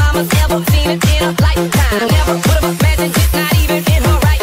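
Electronic dance music remix playing, with a steady pounding kick-drum beat and a pulsing bass line under synth lines.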